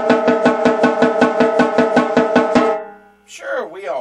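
Snare drum played fortissimo in an even run of strokes, about eight a second, each stroke ringing with a steady drum tone; the run stops a little before three seconds in. A short burst of voice follows near the end.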